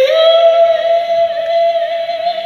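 A male singer holding one long, high sung note into a microphone, stepping up in pitch right at the start and then sustained.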